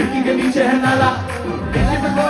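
Live band music with singing, played loud through the concert PA and recorded from within the crowd.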